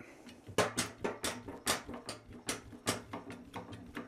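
Hydraulic hand pump of a 10-ton porta power kit being worked by its lever, giving a regular series of sharp metallic clicks, about two to three a second.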